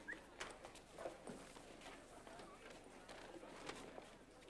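Faint, scattered knocks and clicks at an irregular pace, over a faint background hush.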